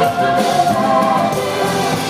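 Live rootsy rock band music: a male vocalist singing, sustaining notes, over strummed acoustic guitar, with other voices singing harmony alongside him.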